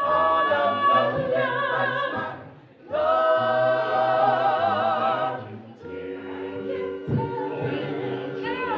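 Church choir of men's and women's voices singing a cappella in harmony, with a lead singer on a microphone. The notes are held with vibrato, with a short break in the singing about two and a half seconds in.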